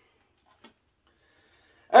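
Near silence in a small kitchen, broken by one faint, short click a little past halfway.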